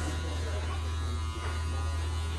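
Steady electric buzz and hum of a barber's handheld hair dryer running.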